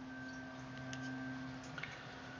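Faint handling clicks as a small metal-cased headphone amp is turned over in the hands, one about a second in and another near the end, over a steady low hum.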